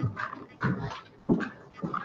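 Quiet, indistinct voices talking away from the microphone, in short broken bursts.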